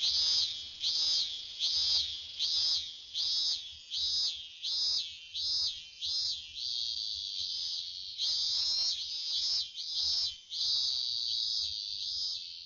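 Cicada singing as a summer background: a high buzz pulsing about twice a second, with two longer held stretches in the middle and near the end.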